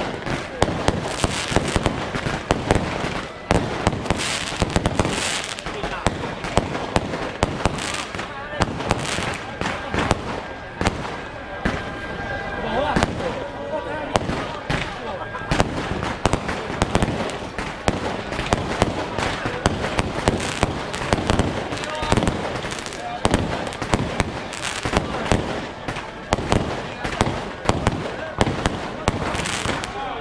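Strings of firecrackers going off continuously: dense, rapid cracks and pops with no let-up.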